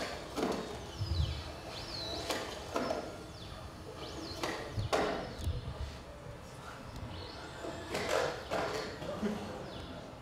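Boston Dynamics Atlas humanoid robot jumping between boxes, with a few heavy thumps of its feet landing and whining sounds in between. The sound is played back through the hall's speakers.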